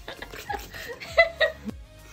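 A woman laughing in short bursts, over background music.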